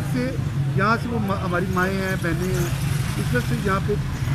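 A man speaking over a steady low hum.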